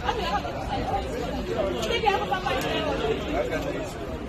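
Indistinct chatter: several people talking at once, no words clear, over a low steady background rumble.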